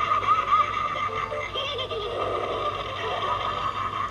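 Animated light-up Halloween clown picture playing its sound track through its built-in speaker: music with a voice over it.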